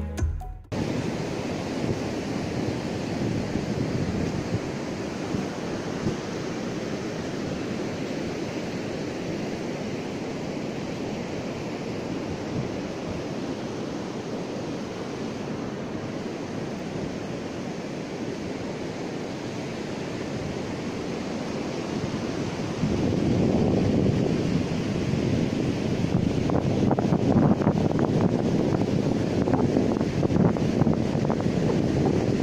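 Sea surf breaking on a sandy beach, a steady wash, with wind buffeting the microphone. The wind noise grows louder about three-quarters of the way through.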